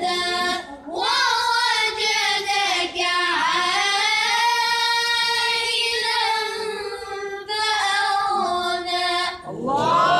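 A boy reciting the Qur'an in a melodic tajweed style: long held phrases whose pitch slides and turns in ornaments. There is a brief breath about a second in and another near the end.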